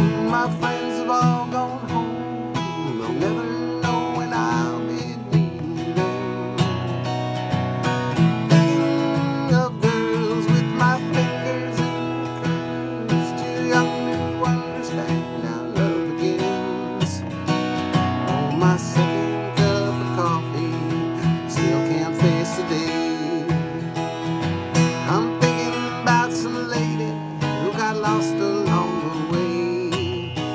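Steel-string dreadnought acoustic guitar strummed steadily in an instrumental break of a folk song, the strokes coming fast and even across the strings.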